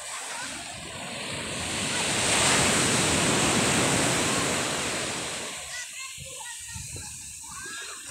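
Surf on the shore: a wave breaks and washes up, the rushing sound swelling to its loudest about two to four seconds in and dying away by about five and a half seconds.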